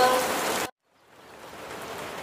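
Steady hiss of a rain ambience track, with the last of a sung recitation fading out at the start. The audio drops to complete silence for about a third of a second just under a second in, then the rain fades back in and runs on more quietly.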